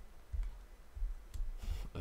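A few light clicks of a computer mouse, with dull low bumps in between.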